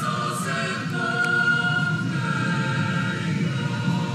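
A choir singing slow, long-held notes in several voices.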